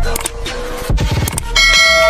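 Background music with a beat. About one and a half seconds in, a loud, bright bell-like chime comes in and rings on, a sound effect over the music.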